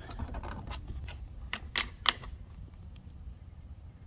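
A few short plastic clicks and knocks as a lawn mower's plastic side-discharge chute is handled and fitted against the deck, the sharpest knock about two seconds in, over a steady low rumble.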